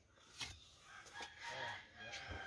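A faint, drawn-out call in the background, loudest in the second half, after a small click about half a second in.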